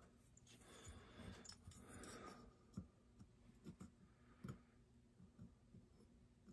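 Near silence with faint handling of a metal caliper: soft rubbing in the first couple of seconds, then a few light, scattered clicks as it is set and locked.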